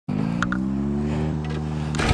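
Honda Monkey's 140cc YX single-cylinder four-stroke engine running at a low, steady speed, its pitch creeping up slightly in the first second and then holding.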